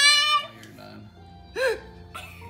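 A loud, high-pitched vocal squeal, held for about half a second and then cut off, followed by a short rising-and-falling squeal about a second and a half in.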